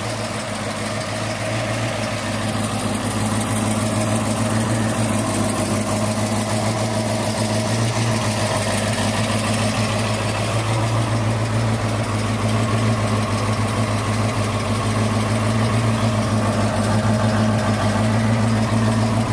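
Classic Ford's engine idling with a steady, even low hum.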